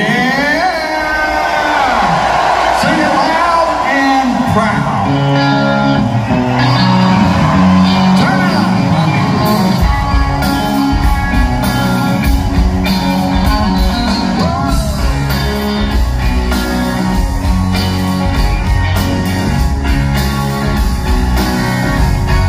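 Live rock band opening a song with an electric guitar intro. The bass and drums come in about ten seconds in, and the full band then plays on together.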